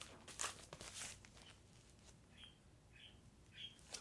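An LP record jacket being handled and moved, giving a few quick crinkly rustles in the first second or so. A few faint short high chirps follow later.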